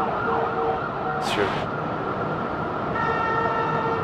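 Emergency vehicle siren sounding from the street, its tone switching back and forth between pitches and then holding one steady note near the end.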